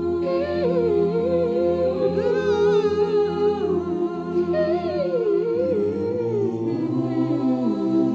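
An a cappella virtual choir holds sustained chords while a solo voice sings a wavering melody over them. A second solo phrase begins about halfway through and falls lower toward the end.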